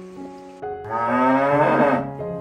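A cow mooing: one long, loud moo starting just under a second in, over piano background music.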